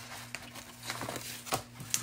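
Sheets of designer paper and a paper die-cut being handled and shuffled on a desk: soft rustles and a few light taps, over a faint steady low hum.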